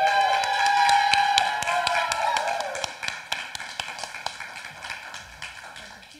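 Small group clapping and cheering at a baptism by immersion, with whooping voices over the first couple of seconds. The applause then fades away.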